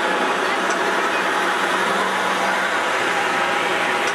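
Heavy lorry's diesel engine idling steadily, a constant low hum, with voices in the background.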